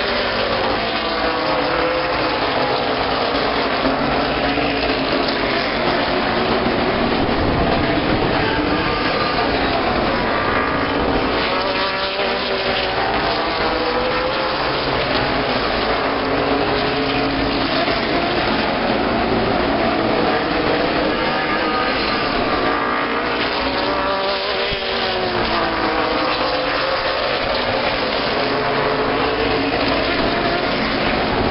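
A pack of late model stock cars racing on a short oval, their V8 engines running hard, with the pitch rising and falling in overlapping waves as the cars pass and go through the turns.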